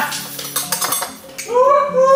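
A metal spoon and dishes clinking in a kitchen: a quick run of light clinks, with a woman's voice starting about a second and a half in.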